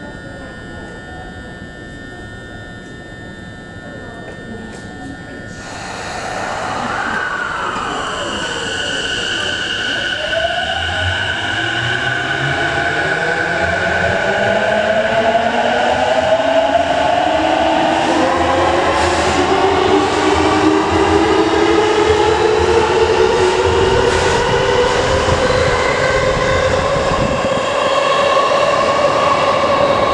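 JR East E233 series 2000 subseries electric train starting away from the platform. For the first few seconds it stands humming steadily. Then its VVVF inverter traction-motor whine sets in, several tones climbing steadily in pitch and growing louder as the train accelerates out of the station.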